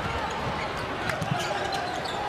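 A basketball dribbled on a hardwood court, a few bounces heard as faint short knocks, over the steady background noise of an arena crowd.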